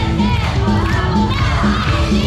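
Loud pop dance music with a steady bass line, with teenagers in the audience shouting and cheering over it.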